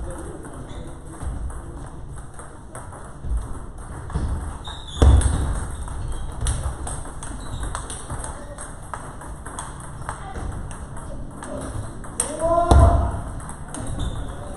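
Table tennis balls clicking off paddles and tables in quick, irregular strokes from several rallies at once, with heavy thumps about five seconds in and again near the end. A player's voice calls out near the end.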